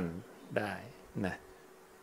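A man speaking Thai in a slow, unhurried way: a phrase ending, then two short syllables separated by pauses, over a faint steady hum.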